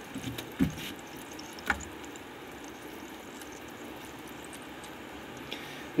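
Water boiling in a tilted non-stick frying pan, cooking small potatoes, with a steady bubbling. A few light knocks come in the first two seconds.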